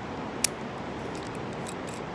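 Carabiner and ATC belay device clicking as rope is loaded through them: one sharp click about half a second in, then a couple of fainter clicks, over a steady background hiss.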